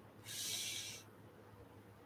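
A short breath close to the microphone, a breathy hiss lasting under a second, heard once a quarter second in, over a faint steady room hum.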